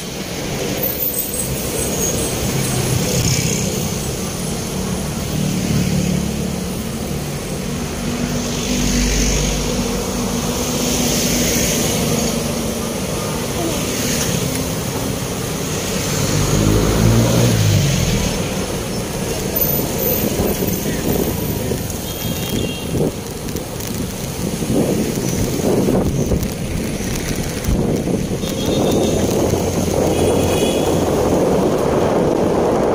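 Street traffic heard from a moving motorcycle: engines running, with a large bus close alongside, and a low engine note that rises and falls about halfway through. Short high beeps sound briefly twice in the second half.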